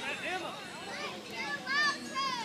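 Several high-pitched voices calling and chattering indistinctly, overlapping one another, with no clear words.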